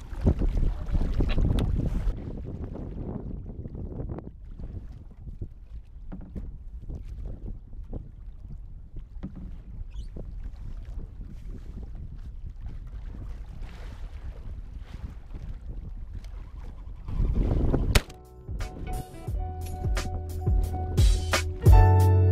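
Wind buffeting the microphone and small waves lapping against the hull of a layout boat on open water, loudest in the first couple of seconds. About 18 seconds in it cuts to background music with plucked guitar and a beat.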